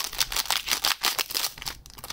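Foil wrapper of a Panini Fortnite Series 1 trading-card pack crinkling in a rapid, irregular crackle as it is handled and worked open.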